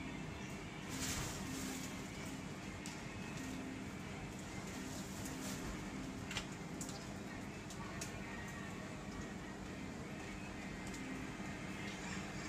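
Steady background hum and hiss with a few faint short clicks.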